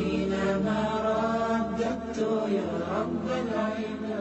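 A solo voice chanting melodically in long, wavering held notes over a steady low drone.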